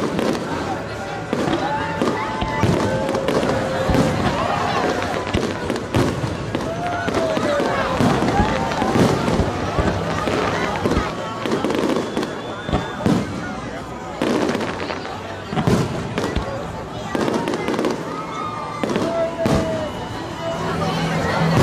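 Fireworks display going off: repeated bangs and crackles through the whole stretch, with onlookers' voices heard throughout.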